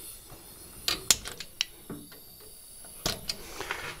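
Brass quick-release hose fittings being uncoupled from an oxy-fuel torch's gas-saver valve: a few sharp metallic clicks and knocks, a cluster about a second in and another near the end.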